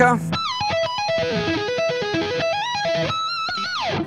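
Electric guitar playing a fast lead lick that mixes slides, legato pull-offs and string-skipping arpeggios: a quick run of stepped notes, ending in a long slide down in pitch near the end.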